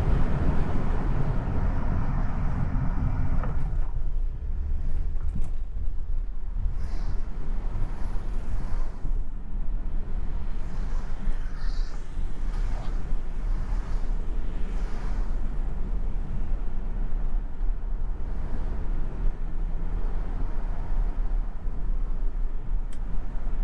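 Taxi driving slowly along a city street: a steady low rumble of engine and tyre noise, a little fuller for the first few seconds.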